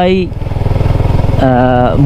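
Motorcycle engine running steadily at low road speed, heard from the rider's seat. About one and a half seconds in, a man's voice holds a drawn-out hesitation sound for about half a second.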